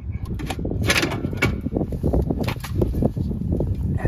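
Metal clattering and scraping, a quick run of knocks, as an Airstream trailer's 12-inch brake drum is worked loose and pulled off its wheel spindle.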